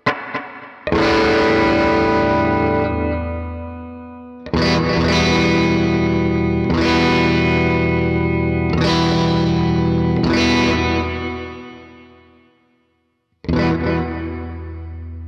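Electric guitar played through a Fender Mustang GTX100 modeling combo amp, its tube bias setting raised to about +20%: strummed chords left to ring out and fade. One chord rings about a second in, a run of chords follows from about four and a half seconds, dies away to silence, and a new chord starts near the end.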